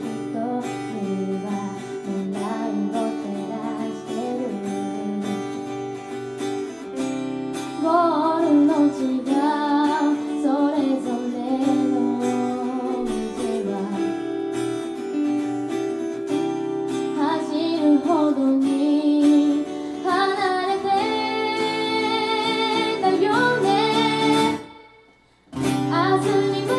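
A live song: a young woman singing over two acoustic guitars, strummed and picked. The sound drops out briefly near the end, then comes back.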